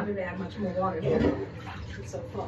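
Indistinct voice for about the first second, then quieter room sound.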